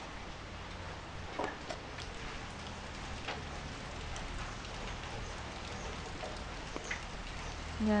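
Light drizzle falling on a wet concrete yard: an even hiss of rain with a few sharper ticks scattered through it.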